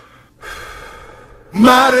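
A brief break in the music filled by a singer's audible intake of breath, then a male voice comes in loudly singing about a second and a half in.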